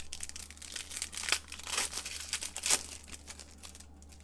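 Foil wrapper of a Panini Select basketball card pack crinkling as it is torn open by hand, with a few louder crackles.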